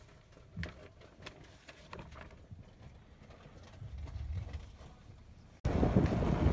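Faint low rumble inside a moving bus, with a few soft rustles and taps as notebook pages are leafed through.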